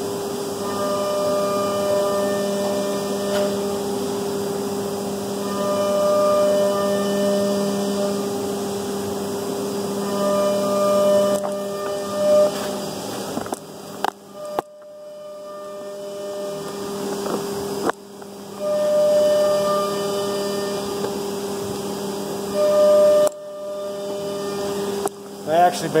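A steady low machine hum, with a higher tone that swells and fades every few seconds and a few sharp knocks or handling clicks about halfway through.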